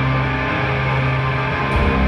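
Rock band playing live, electric guitar to the fore, with the low end growing heavier near the end.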